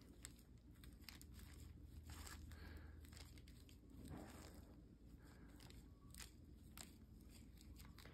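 Near silence with a few faint, scattered ticks and rustles: gloved hands working forceps while pulling the skin of a preserved fetal pig's leg away from the muscle.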